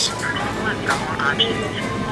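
Restaurant room noise: a steady hum with faint voices in the background.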